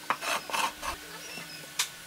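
Pallet-wood bird-feeder parts scraping and rubbing against a wooden workbench in four or five short strokes, then a single sharp knock near the end.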